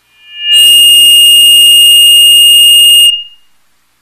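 A loud, high synthesized tone from a TV programme's intro music: it swells in over about half a second, holds steady for about two and a half seconds, then fades out quickly.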